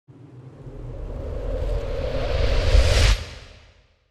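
Intro whoosh sound effect with a deep rumble, swelling steadily for about three seconds to a peak and then dying away quickly.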